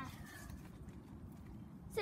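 A child's short vocal sound, falling in pitch, at the very start, then only low, steady background noise.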